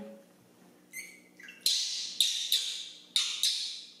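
Baby macaque screaming: a quick run of shrill, high-pitched cries from about a second in, with five loud ones close together, typical of the infant crying from hunger for its milk.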